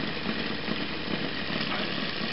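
Home-built multi-coil Bedini SSG radiant battery charger running, its four-magnet rotor spinning steadily past the coils.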